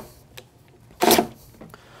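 A man clearing his throat once, a short rough burst about a second in, in a quiet room.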